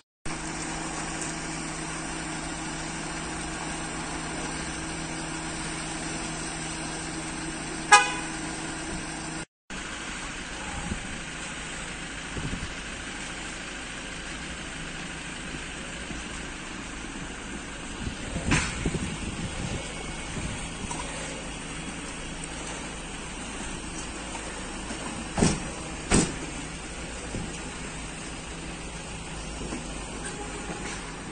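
Street ambience with a steady low hum and a short car horn toot about eight seconds in, the loudest sound. Later come a few sharp knocks, two of them close together. The sound cuts out briefly twice.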